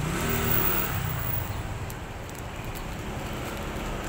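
A motor vehicle's engine revving as it passes, loudest in the first second and a half, over a steady low traffic hum.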